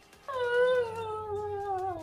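A single long howl that starts about a quarter second in and slides slowly and steadily down in pitch.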